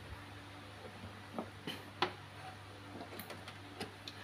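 A few faint, short clicks and taps of hands handling an opened laser printer, the sharpest about two seconds in, over a low steady hum.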